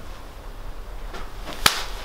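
A single sharp crack, very short, near the end, over faint low room noise.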